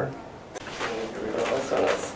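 Indistinct voices, mixed with a few short swishing noises.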